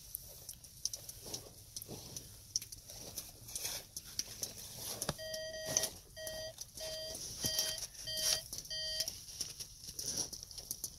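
Snow crunching and scraping as a toy loader tractor and mittened hands are pushed through it, in many small uneven crunches. A little past halfway a run of six evenly spaced electronic beeps sounds, about one every three quarters of a second.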